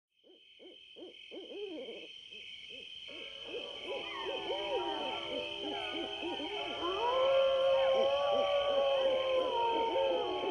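Night-time animal calls fading in from silence: many short, repeated hooting calls that soon overlap, over a steady, pulsing high trill, with a longer held call from about seven seconds in.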